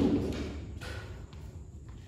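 A thud right at the start that fades over about half a second, followed by a couple of fainter knocks.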